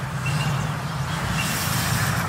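Inline skate wheels rolling on concrete, then scraping sideways in a forward power slide, with a hiss that builds near the end. A steady low rumble sits underneath.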